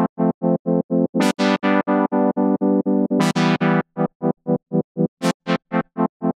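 A simple synthesizer chord chopped into rhythmic pulses, about four to five a second, by the S-Pulser rhythm-gating plugin. New notes sound about a second in and about three seconds in. Meanwhile the plugin's Length control is being turned up, which sets how abrupt or smooth each pulse is.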